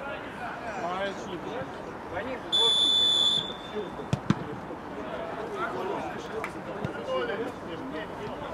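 Referee's whistle, one steady high blast of just under a second, signalling the free kick to be taken. About a second and a half later the ball is struck with a sharp thud, and a second knock follows right after.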